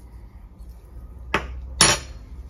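Metal spoon knocking twice against a glass mixing bowl, about half a second apart, the second knock louder and ringing briefly.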